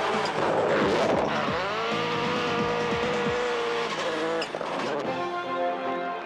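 Skoda Fabia WRC rally car's turbocharged four-cylinder engine revving hard on snow, its pitch dropping and climbing again as it changes gear, with tyre noise. About five seconds in it gives way to music.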